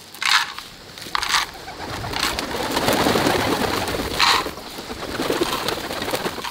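Grain poured from a tray rattling into small wooden feeder boxes in a few short bursts, then a flock of pigeons flapping their wings as they fly down to feed, loudest about three seconds in.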